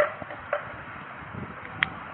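Two sharp clicks over steady background noise, one about half a second in and one near the end.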